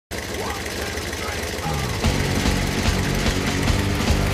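Corvette Stingray V8 engine running with fast, even low pulsing that gets louder about two seconds in, with music and a voice mixed over it.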